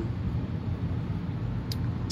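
Steady low background rumble and hum, with a faint click near the end.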